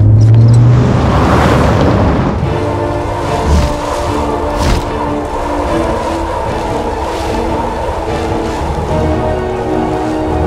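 Dramatic film score with sound design: a deep low rumble opens, then sustained ominous chords hold, with a couple of sharp booms about three and a half and five seconds in.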